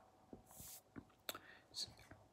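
A man's faint breath, a short soft hiss about half a second in, followed by a few faint mouth clicks.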